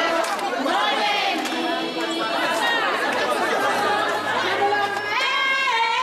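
A large crowd of many voices talking and singing at once, with a high rising call near the end.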